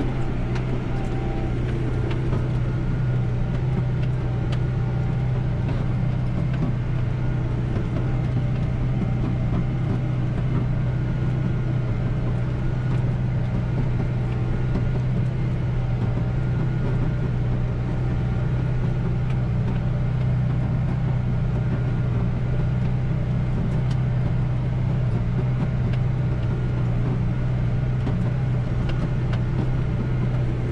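The 130-horsepower McCormick MC130 tractor's diesel engine is running at a steady, even drone under load, heard from inside the cab as it pulls a 32-disc harrow through dry soil.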